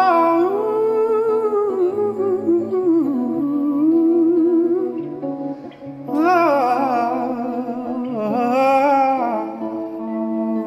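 Live rock band music: a man singing long wordless lines with a wavering vibrato over sustained chords and bass guitar, the voice dropping out briefly a little past the middle before climbing back in.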